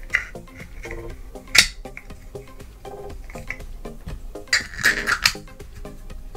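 Light background music of short plucked notes, over which a 3D-printed plastic case is handled and fitted together, giving one sharp click about one and a half seconds in and a quick cluster of clicks near the end.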